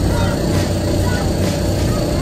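Steady low hum of the electric blower fans that keep the inflatable bounce houses up, with faint children's voices in the background.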